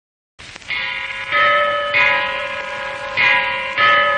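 Bells struck in a slow, uneven run in the instrumental opening of a Malayalam film song, five strokes roughly half a second to a second apart, each ringing on under the next.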